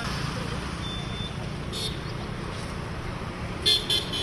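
Steady low vehicle rumble with two short, loud vehicle-horn toots near the end.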